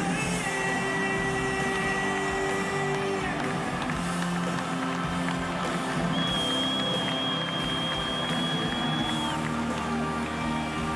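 Rock band playing live, with loud electric guitars, bass and drums. A long held high note rings over the first three seconds, and a higher one from about six seconds in bends down near the end.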